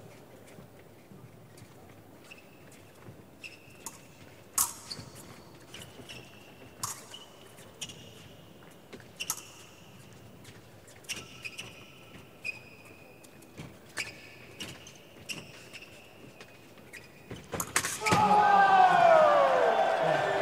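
Fencing shoes squeaking and feet stamping on the metal piste, with sharp clicks of épée blades, during a bout. About eighteen seconds in, a touch lands and loud shouting and cheering break out.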